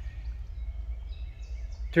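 Outdoor background: a steady low rumble with birds calling faintly in the distance, the calls clearer in the second half.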